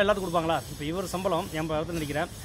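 Only speech: a man talking steadily in Tamil.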